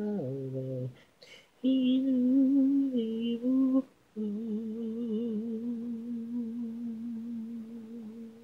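Wordless a cappella vocal harmony: held sung chords broken by two brief pauses, then a long final note with slight vibrato that fades out near the end.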